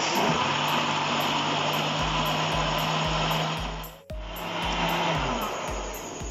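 Electric blender running, blending mango pieces with milk and sugar into a milkshake. The motor cuts out briefly about four seconds in, starts again, then slows down near the end.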